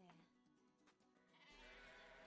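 Faint sheep bleating over soft music, coming in about one and a half seconds in.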